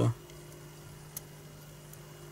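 Two light clicks of metal tweezers prodding the shutter mechanism of a small phone camera module, over a steady low electrical hum.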